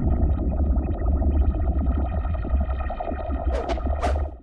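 Outro theme music: a held, effects-laden distorted guitar chord over a steady deep bass, with a few short sharp hits near the end.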